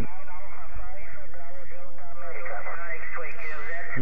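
A distant station's voice coming through a Yaesu FT-817ND transceiver's speaker on the 17 m band: thin, narrow-band speech over a steady hiss of band noise.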